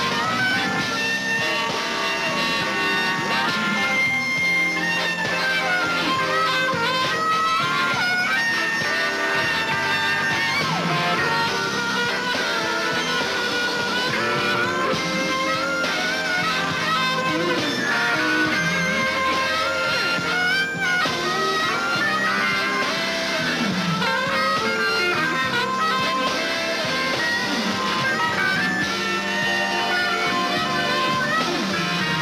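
Electric blues band playing a slow instrumental stretch, an electric guitar leading with bent-string phrases over the band.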